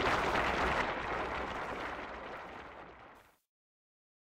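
Studio audience applauding, the clapping fading steadily and cutting off about three seconds in.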